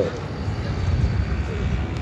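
Steady low rumble of distant engine noise.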